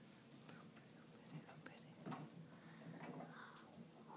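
Near silence: faint room tone with a few scattered light clicks.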